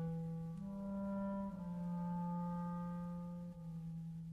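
B-flat clarinet playing a slow single line of long held low notes, changing pitch three times (a step up, then down twice) and growing softer toward the end.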